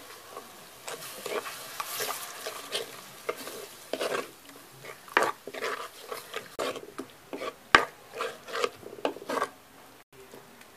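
A ladle stirring and scraping a thick curry around a clay pot in repeated irregular strokes, with one sharp knock of the ladle against the pot about three-quarters of the way through.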